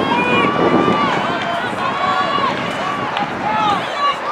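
Several voices shouting and calling out over one another on a football field as a play ends in a tackle, with long, raised shouts rather than conversation.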